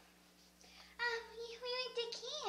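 A girl singing in a high voice: after a brief hush, she holds steady sung notes from about a second in.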